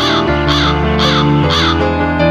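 A bird calling four times in quick succession, evenly spaced about half a second apart, over background music with sustained notes.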